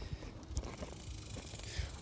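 Faint low rumble with a few soft knocks: handling noise from a handheld phone being moved about.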